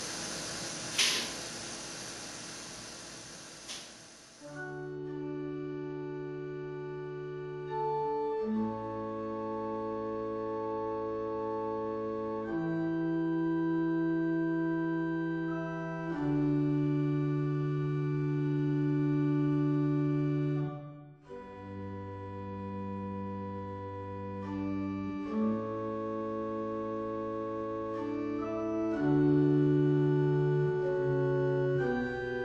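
Computer-emulated pipe organ playing slow, sustained chords held for several seconds each, with only a handful of stops drawn. Before it comes in, about four seconds in, there is a steady hiss with two clicks.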